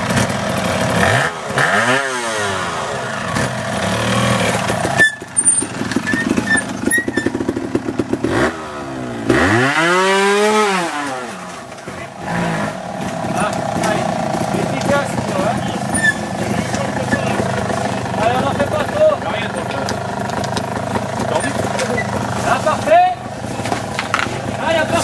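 Trials motorcycle engine running and being revved. Twice the revs climb and drop back, about two seconds in and again about ten seconds in.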